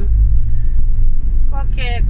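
Low, steady rumble of a car driving, heard from inside the cabin; it starts abruptly.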